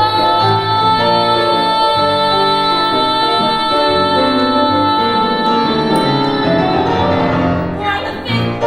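A woman singing one long high note, held for about seven and a half seconds, over chords on a Steinway grand piano; the note breaks off near the end and the piano carries on.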